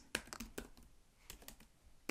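Faint typing on a computer keyboard: a handful of irregularly spaced key clicks.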